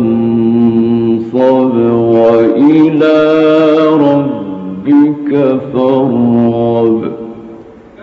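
Male Quran reciter chanting in the melodic mujawwad style, with long, held, ornamented notes broken into a few phrases. The voice fades out near the end.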